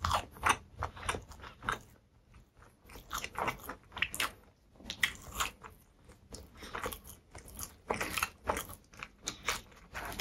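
A person chewing a mouthful of food close to the microphone: an irregular string of short mouth sounds, with brief lulls about two seconds and four and a half seconds in.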